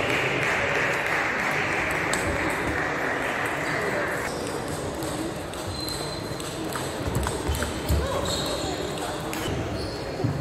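Busy sports-hall background of voices with scattered light clicks of celluloid table tennis balls on nearby tables, under a steady hiss that cuts out about four seconds in. A few low thumps come between the seventh and eighth seconds.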